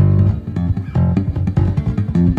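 Electric bass guitar played live in a fast run of plucked notes, with sharp note attacks, as part of a band performance.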